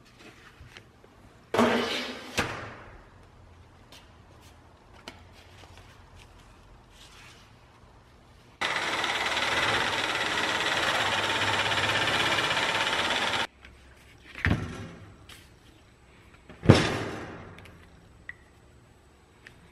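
Handheld electric metal shear running steadily for about five seconds as it cuts through sheet metal. Before and after the cut there are a few sharp bangs, the loudest near the end.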